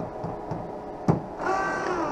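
Lens edging machine humming steadily. A sharp click comes about a second in, followed by a short, steady electronic tone.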